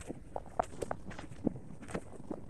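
Footsteps on a sandy dirt path: soft, irregular steps a few times a second.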